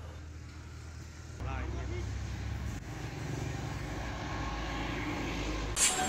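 Road traffic: a vehicle's low rumble that comes in about a second and a half in and slowly swells, with a brief faint voice as it starts. A short whoosh near the end.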